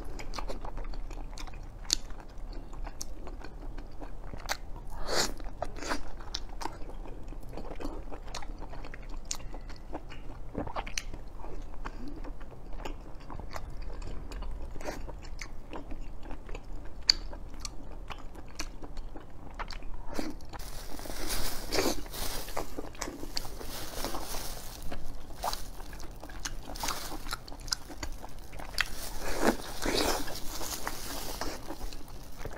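Close-up chewing and biting of a soft, filled mochi pastry, with many small sharp mouth clicks. About two-thirds of the way through, a louder crinkling of thin plastic gloves joins in and lasts to the end.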